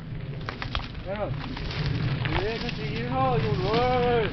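Mountain bike ridden over a rough scrubby singletrack: a steady low rumble with scattered clicks and rattles. A few drawn-out wordless vocal sounds rise and fall in pitch over it, the longest and loudest near the end.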